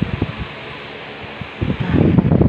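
Steady hiss of heavy rain, with rubbing and bumping on the phone's microphone that grows dense near the end.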